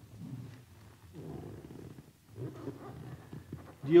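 Low, indistinct murmuring of a man's voice with hesitant hums and breaths, in several short stretches. Clear speech starts at the very end.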